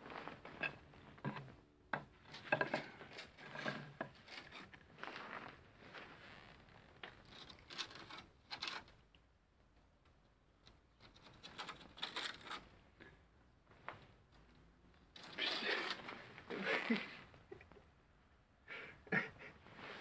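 Faint, scattered scuffs, clicks and rustles of handling and movement, with short quiet gaps and a louder stretch of scuffing about fifteen to eighteen seconds in.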